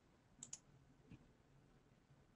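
Near silence broken by two faint, quick computer mouse clicks about half a second in, and a softer click a little later.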